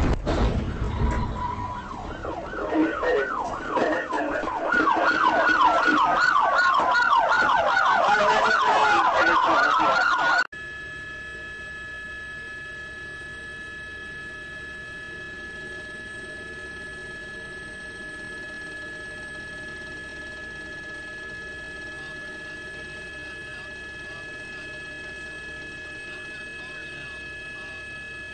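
Police car siren sounding during a pursuit: a quick repeated yelp, then a slower wail that falls and rises again. It cuts off abruptly about ten seconds in, leaving a steady, quieter hum with a few steady tones.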